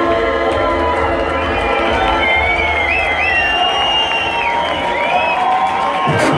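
Electronic dance music from a club sound system in a breakdown: held synth chords with a few high gliding tones and no kick drum, with the crowd cheering over it.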